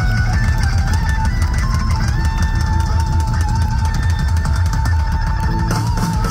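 Hard rock band playing live and loud: a pounding drum kit and electric guitar over heavy bass. A long high note is held through the second half.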